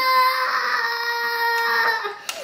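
A young child's voice holding one long, steady, high-pitched 'aaah' for almost two seconds. It breaks off near the end.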